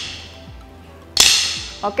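Lightweight plastic Ripstix drumsticks striking with one sharp, ringing clack about a second in, keeping time for a pound-fit move.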